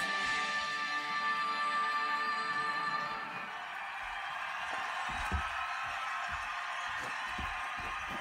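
Music from a figure-skating broadcast playing on a television, with held notes that end about three seconds in. A steady noisy hush follows, with a few soft low thumps.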